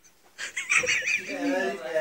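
A man's voice: a loud, squawky, wavering high-pitched cry about half a second in, running straight into excited speech-like sounds.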